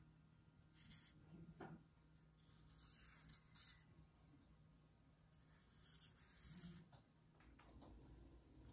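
Faint strokes of a Sharpie marker writing on chicken eggshells, in three short spells about one, three and six seconds in.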